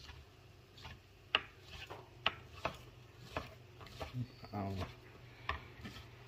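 Chef's knife slicing mushrooms on a plastic cutting board: irregular sharp taps as the blade hits the board, about eight strokes.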